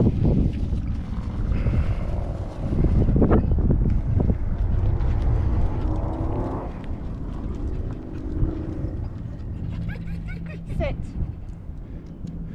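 Steady engine drone over low rumbling noise, with the one-word command "Sit" near the end.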